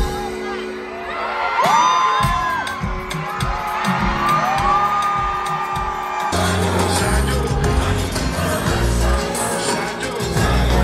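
Live concert music heard from within the crowd: singing voices over the music, and a heavy bass beat kicks in about six seconds in.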